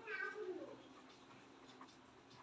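A cat meowing once, faintly: a single short call lasting under a second.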